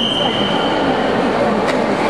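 A referee's whistle blown in one long, steady, shrill note that cuts off under a second in, over the constant chatter of a crowded hall.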